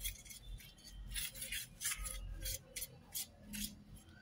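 A spatula scraping chili powder mix across a flat metal plate to spread it out, in a quick run of short gritty strokes, about three a second.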